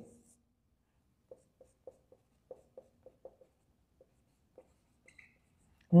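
Marker pen writing on a whiteboard: a string of faint, short taps and strokes as a word is written, from about a second in until past four seconds.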